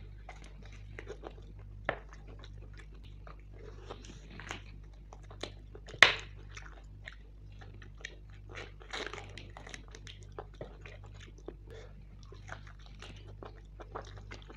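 Close-miked eating of mutton curry by hand: wet chewing, biting and mouth smacks. A sharp, loud crunch comes about six seconds in and a smaller one at about two seconds, over a steady low hum.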